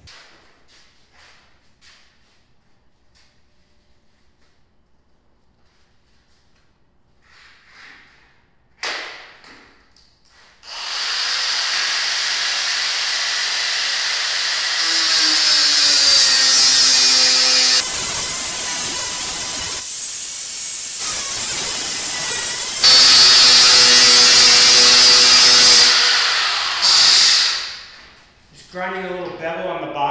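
Handheld electric drill boring a hole through a small square steel plate. It starts about eleven seconds in after a short knock, runs loudly for about sixteen seconds, dips briefly midway and comes back louder, then stops just before the end.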